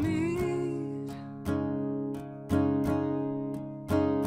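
A woman singing to her own acoustic guitar. Her held note ends about half a second in, and then the guitar strums on alone, with a strong chord about once a second.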